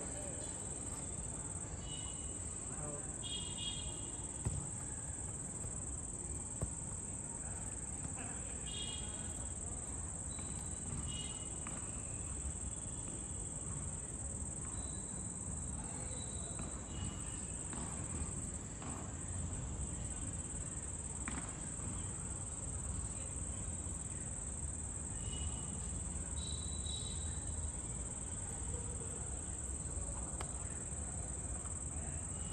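Crickets trilling steadily in a high-pitched band, with short distant shouts from players and a few sharp ball kicks.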